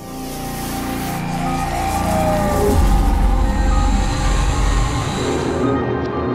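Channel intro sting: sustained musical tones over a swelling deep rumble and an airy whooshing hiss. The hiss cuts off sharply near the end as the music carries on.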